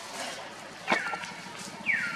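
Baby macaque crying: two short high squeals about a second apart, each falling in pitch.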